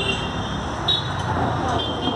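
Busy street ambience: steady traffic noise with people talking, and a few short high tones.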